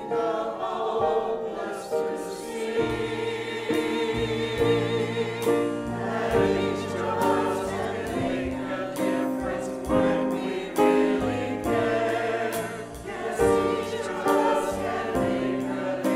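Church choir of men and women singing together during the offering.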